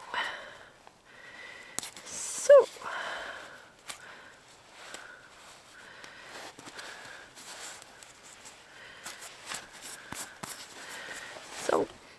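Handling noise of adhesive sports tape being pressed and smoothed onto a silicone model foot: small crackles and rubbing with rustling of a down jacket sleeve, and a short squeak about two and a half seconds in that is the loudest sound.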